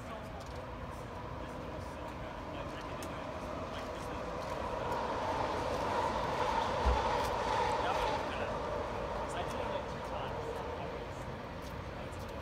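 Elevated SkyTrain passing: a hum with a steady whine swells over several seconds, peaks in the middle and fades away. A brief low thump comes about seven seconds in.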